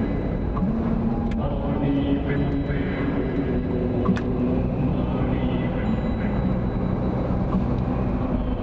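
Steady road and engine noise inside a moving car's cabin as it drives along at road speed.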